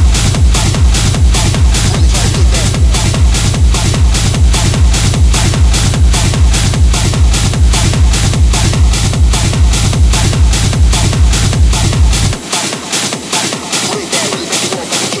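Hard techno DJ mix with a fast, steady kick drum under a continuous synth texture. About twelve seconds in, the kick and bass drop out for a short breakdown.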